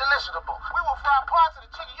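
A man's voice from a commercial playing through a laptop's small built-in speaker, continuous speech that sounds thin, with no low end, over a steady low hum.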